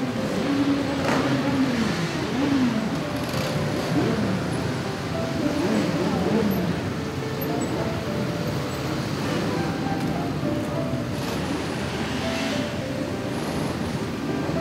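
Several motorcycle engines running and revving up and down as a column of motorcycles rides slowly past, mixed with music and voices.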